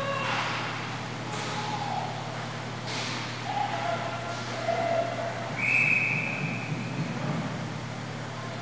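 Indoor roller hockey rink sound: a steady hum, a few sharp clacks of sticks and puck from play at the far end, and short distant shouts. A single high whistle blast of about a second comes about six seconds in.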